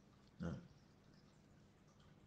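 Near silence with a faint steady hum, broken about half a second in by one brief vocal sound from the lecturer, a short non-word noise between phrases.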